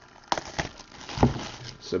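Plastic shrink-wrap on a sealed trading-card box crinkling in a few short, sharp crackles as it is handled.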